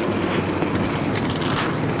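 V8 engines of NASCAR Sprint Cup cars running at idle on pit road, a steady mechanical rumble.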